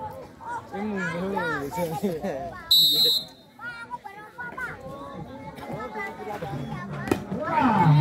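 Voices and children's chatter around a volleyball court, with one short, shrill referee's whistle blast about three seconds in, signalling the serve.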